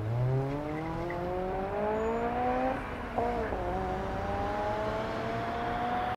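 A vehicle engine accelerating in street traffic, its pitch rising steadily. About three seconds in it breaks and dips briefly, like a gear change, then rises slowly again.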